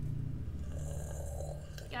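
Low, steady ambient music drone, with a soft breathy noise about a second in.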